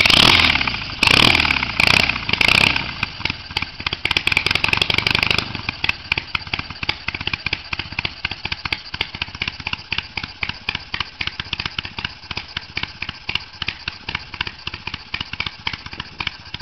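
BMW R80/7's air-cooled 800 cc boxer twin, on shortened exhaust pipes with small silencers, just started and blipped several times, held at higher revs for about a second and a half, then settling into an even idle.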